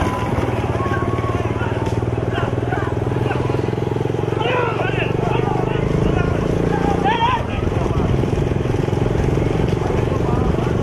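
A vehicle engine running steadily close by, with men shouting over it twice near the middle.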